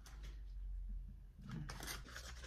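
Faint rustling and scraping of a small cardboard cosmetics box being handled and opened by hand, with a short burst of scratchy rustles near the end.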